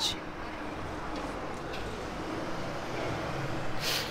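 Steady outdoor street background: a low rumble with a light hiss, typical of distant road traffic, with a short burst of noise just before the end.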